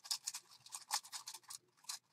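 Small metal charms clinking against each other and the metal muffin tin as fingers sort through them: a quick, irregular run of light clicks that thins out near the end.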